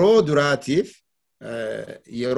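Only speech: a man talking, with a short pause about a second in.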